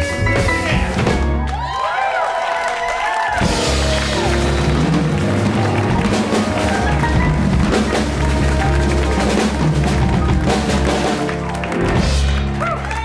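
Live jazz trio of acoustic piano, upright bass and drum kit playing an instrumental passage. The bass and drums drop out for a moment about two seconds in, then the full band comes back in.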